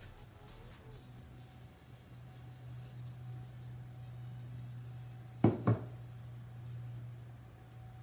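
A small glass bowl knocking twice in quick succession, as if set down on a hard surface, about five and a half seconds in, over a faint steady low hum.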